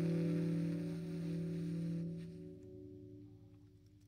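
The final chord on a Telecaster electric guitar rings out and fades steadily, with a few faint clicks as it dies away.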